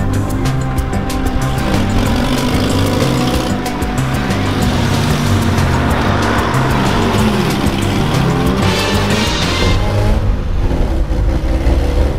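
Background music with a steady beat over a car driving off, its engine rising and falling in pitch as it accelerates.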